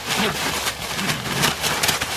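A coon dog worrying a dead raccoon in dry fallen leaves: a steady crackling rustle of leaves and scuffling as it tugs at the carcass.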